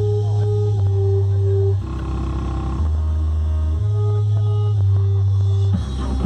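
Music played loud through a car audio open-show system driven by Rock Series amplifiers, dominated by long, heavy bass notes from the subwoofers that step in pitch every second or two, with a higher melody line over them.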